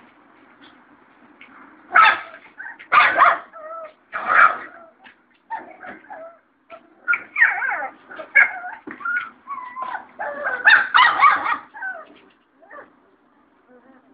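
Puppies whimpering and yipping in short bursts: a few sharp, loud yelps about two to four seconds in, then a run of high whines that slide up and down in pitch.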